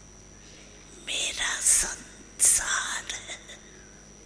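An elderly woman speaking softly and breathily in Hindi into a microphone: two short phrases with sharp hissing consonants, about a second in and again around two and a half seconds in, with pauses around them.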